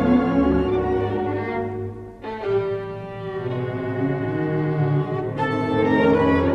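Solo violin and symphony orchestra playing the first movement (Moderato) of a violin concerto. The full string-led texture thins and quiets about two seconds in, a softer passage with a long held note follows, and the full sound comes back near the end.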